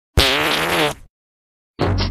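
A single fart sound effect lasting just under a second, its pitch wobbling. It cuts off into a short silence, and music starts near the end.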